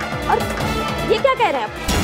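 Dramatic serial background music, with short sliding yelp-like cries over it about half a second and a second and a half in.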